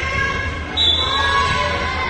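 A volleyball being struck during a rally on a gym court. Players' and spectators' voices call out over it, and a brief high-pitched sound comes about a second in.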